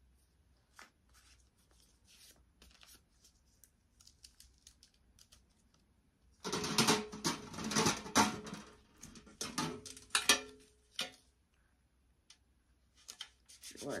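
Faint scattered clicks and rustles of handling, then from about six seconds in several seconds of clattering and scraping, with brief metallic rings, as a painted metal pail with a wire handle is pulled from a stack of nested pails.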